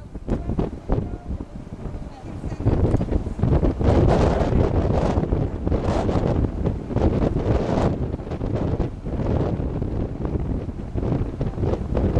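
Gusty wind buffeting the camera microphone, a rushing noise that grows louder about two and a half seconds in and stays strong, rising and falling with the gusts.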